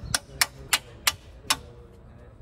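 Sharp metallic clicks, about three a second and spacing out slightly, from hand work on the rotator fitting of a Gripen 015 forestry crane grapple.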